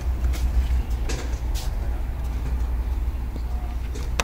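Steady low rumble with a few faint clicks and rustles.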